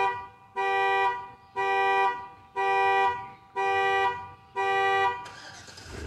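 Car alarm honking the car's horn in a steady pattern, about one honk a second, each a little over half a second long; it stops about five seconds in.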